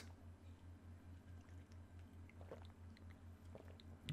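Near silence: a quiet sip of carbonated soda from an aluminium can, with a scatter of faint small clicks in the second half over a low steady hum.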